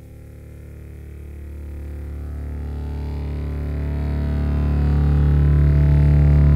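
Opening of a 1976 rock song: a low, sustained chord fading in and swelling steadily louder, with no beat or vocals yet.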